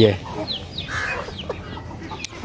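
Backyard chickens clucking, with several short, high, falling peeps scattered through the moment.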